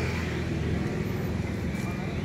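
A vehicle engine idling steadily, a low, even running sound with a fine rapid pulse.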